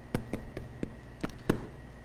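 Handling sounds at a wooden pulpit as Bible pages are leafed through: about six short, sharp clicks and taps, spaced irregularly.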